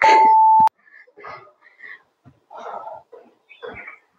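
Workout interval timer beep: one steady tone lasting under a second and cut off with a click, marking the end of the exercise set and the start of the rest. Several short, hard breaths follow as the exerciser recovers.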